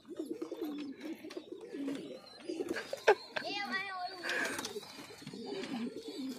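Many domestic pigeons cooing together, a continuous low, wavering murmur, with a sharp click about halfway through.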